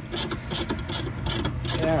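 Socket ratchet clicking in quick, steady strokes, about four clicks a second, as it turns out a bolt that has already been broken loose.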